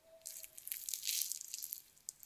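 A fork cutting down through a slice of apple-topped financier cake, the baked crust and thin apple slices giving a quiet, fine crackling and tearing. It starts a moment in and lasts well over a second.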